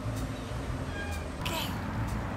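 A trapped cat meows once, briefly, from inside a towel-covered wire live trap, about one and a half seconds in, over a steady low rumble.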